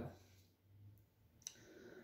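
Near silence in a pause between spoken phrases, broken by one short, faint click about one and a half seconds in.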